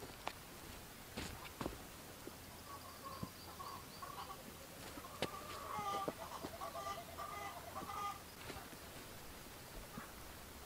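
Chickens clucking faintly in a pulsing run of calls from about three to four seconds and again from about five to eight seconds. Light taps and scrapes come from hands working loose soil and setting down seed potatoes.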